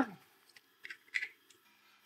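A spoken word trails off, then near quiet broken by two faint, short rustles or clicks about a second in: a USB cable being handled.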